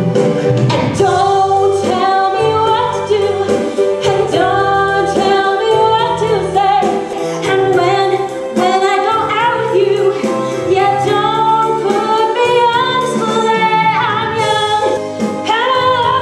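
Live stage performance of a 1960s-style pop song: several women singing in harmony, with held notes, over instrumental accompaniment.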